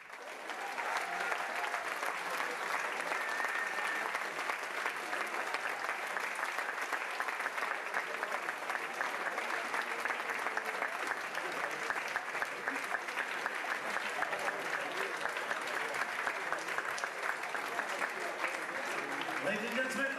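Audience applauding, steady and sustained, beginning just after the band's final note. A man's voice comes in near the end.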